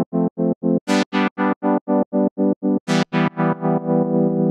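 A simple synthesizer chord rhythmically chopped by the S-Pulser pulse/tremolo plugin, about five pulses a second with silence between them. Near the end the gaps fill in and the chord becomes nearly continuous as the effect depth is turned down.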